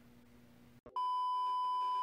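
An electronic beep: one steady pure tone lasting about a second, starting about halfway in after near silence and cut off abruptly at the end.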